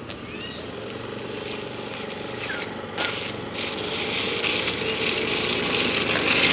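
Small petrol automatic scooter engine running as the scooter rides slowly toward the listener, growing steadily louder. A few short bird chirps come early and midway.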